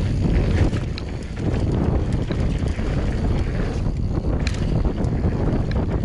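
Wind buffeting a handlebar-mounted action camera's microphone while a mountain bike rolls fast down a dusty dirt trail. The tyres make a steady rumble over the dirt, with a few small clicks and rattles from the bike.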